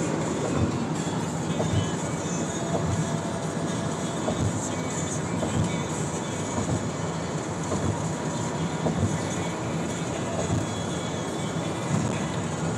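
Steady road and wind noise inside a car cabin at highway speed, with soft low thumps every second or so.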